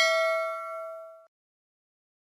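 Bell ding sound effect for an animated notification-bell click, ringing with several clear tones and fading, then cut off abruptly a little over a second in.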